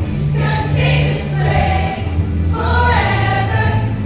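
Junior high show choir singing together over instrumental accompaniment, with a bass line changing notes about every half second beneath the voices.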